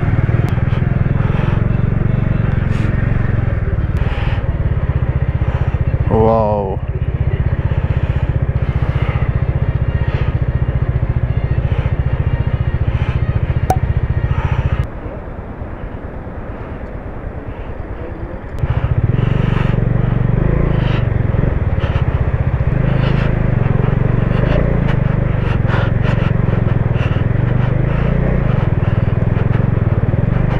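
Motorcycle engine running at low speed with a steady low rumble, plus clatter and knocks from a rough, rocky road. A short wavering tone sounds about six seconds in, and the rumble drops away for a few seconds around the middle.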